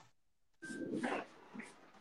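A dog making a short, faint sound about half a second in, with smaller faint sounds after it.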